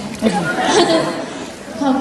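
A woman speaking briefly into a microphone, with others chattering.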